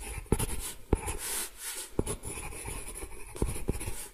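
A pen scratching across paper as a sketch is drawn, with several sharp taps of the pen tip.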